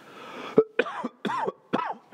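A man coughing in a quick run of about five coughs. The first, about half a second in, is the sharpest and loudest.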